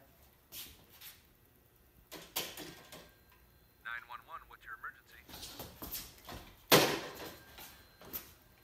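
Clicks and knocks from a corded telephone handset being handled, with a short faint voice about four seconds in and a loud knock near the end.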